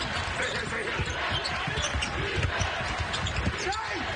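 Live basketball court sound in an arena: a basketball bouncing on the hardwood floor and sneakers squeaking, over a steady crowd murmur.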